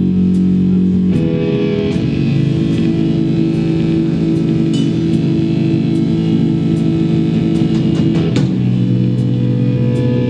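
Live rock band playing loud: electric guitar and bass guitar holding sustained, ringing chords over drum kit and cymbal hits. The chord changes about a second in and again near the end.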